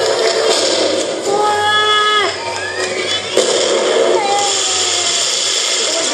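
Ground firework fountain spraying sparks: a steady hiss peppered with sharp crackles. People's voices call out over it, one held call lasting about a second.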